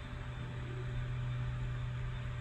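A steady low hum over a faint even hiss.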